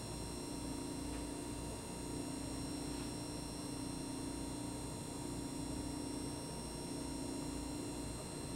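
Steady electrical hum and hiss of room tone, with a low buzz that waxes and wanes slightly. There are no distinct events.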